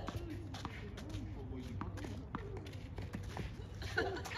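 A few sharp knocks of a tennis ball being bounced and struck on a clay court, under indistinct voices talking in the background.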